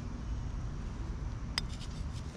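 A metal hand trowel clinks sharply once against hard material while digging, about a second and a half in, with a couple of fainter ticks after it. Underneath is a low, steady rumble of wind on the microphone.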